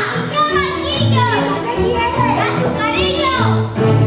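Children's high voices calling out and singing on stage over orchestral accompaniment, with held low instrumental notes beneath, in a large hall.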